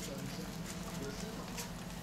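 Newborn puppies crawling on a puppy pad: a few soft clicks and rustles of the pad over a steady low hum.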